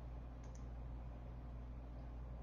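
A couple of faint, short clicks about half a second in, over a steady low hum.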